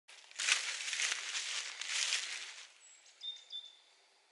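Footsteps crunching through dry fallen leaves for about two and a half seconds, then a few high, thin bird calls near the end.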